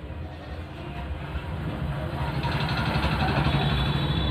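A vehicle engine running in the background, growing louder from about halfway through.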